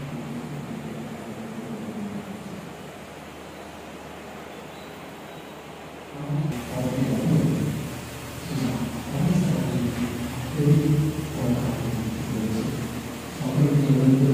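Indistinct distant voice over a low rumbling background noise, the voice faint at first and louder from about halfway through.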